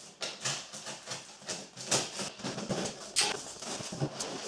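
Cardboard shipping box being opened, its packing tape cut and its flaps pulled back: a run of irregular scrapes and crackles, with a sharper rasp about three seconds in.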